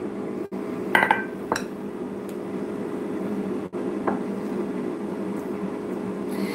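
A metal spoon and glassware clinking against a glass mixing bowl while pancake batter ingredients are mixed by hand: a few sharp clinks about a second in, another shortly after, and one more about four seconds in, over a steady low hum.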